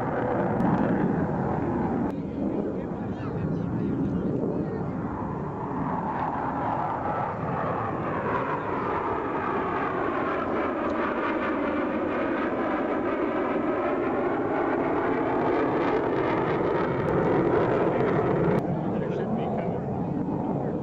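Jet noise from a McDonnell Douglas F-15E Strike Eagle's twin engines as it makes a slow pass with gear and speedbrake out: a steady rush with a sweeping whoosh in the middle as it goes by.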